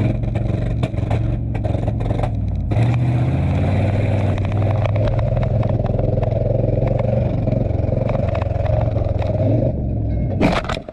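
A Dodge 1500 pickup's engine, heard from inside the cab, running steadily under load as the truck rolls across rough ground, picking up slightly about three seconds in. The cab and body rattle throughout. The engine is misfiring and not running on all cylinders.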